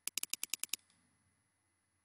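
A fast, even run of about eight sharp clicks in the first three quarters of a second, a computer mouse's scroll wheel being turned notch by notch.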